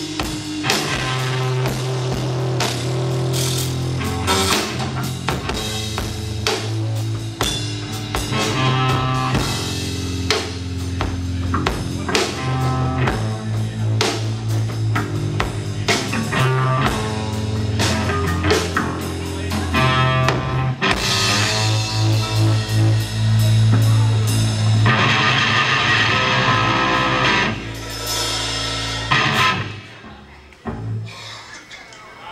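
Instrumental hard rock played live by a trio of electric guitar, electric bass and drum kit, loud and driving. Near the end it swells into heavy cymbal crashes, then stops just before the end as the song finishes.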